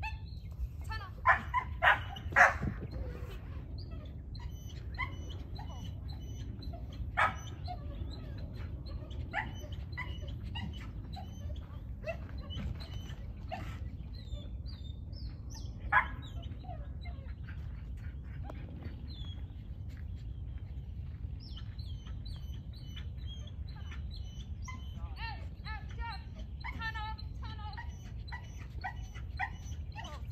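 Dog barking in short, sharp yaps: a quick cluster of three about one to two seconds in, then single barks around seven and sixteen seconds, with fainter high yips and whines later, over a steady low background rumble.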